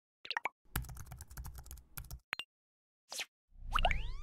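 Sound effects of an animated logo intro: a few quick pops, then a fast run of clicks like typing for about a second and a half, a short whoosh, and near the end a rising swoosh over a low boom.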